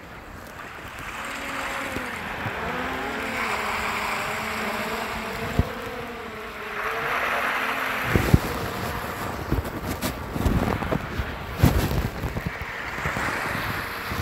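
Wind buffeting the microphone, with a faint wavering hum through the first half. From about eight seconds in, it turns to irregular low thumps.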